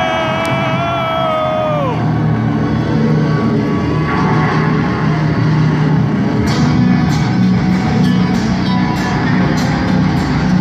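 Live rock band amplified at concert volume: a long held note bends down and ends about two seconds in. A low, steady guitar-and-bass drone then takes over and builds as the next song starts, with regular high ticks about twice a second from around seven seconds on.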